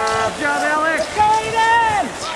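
Shouted cheering of encouragement to passing ski racers: about three long, drawn-out yelled calls, one after another.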